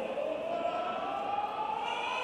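Arena background noise with a single pitched tone rising slowly and steadily over about two seconds, like a crowd or PA sound rising in pitch.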